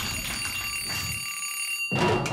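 Alarm clock bell ringing as an intro sound effect: a steady high ring that cuts off suddenly near the end.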